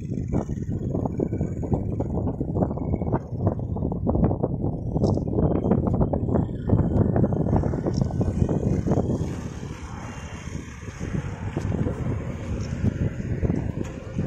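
Wind buffeting the microphone: a loud, low, fluttering rumble that eases somewhat about ten seconds in and picks up again near the end.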